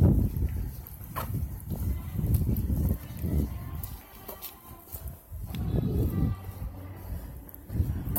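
Wind rumbling on a handheld phone's microphone in uneven gusts, with a few brief knocks from handling.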